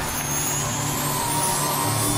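Instrumental intro of a pop song: sustained held chords over a low drone, with the full music building just after.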